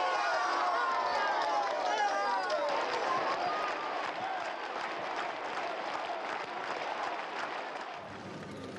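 A large crowd cheering and applauding: many voices shouting together for the first few seconds, then dense clapping that eases off a little toward the end.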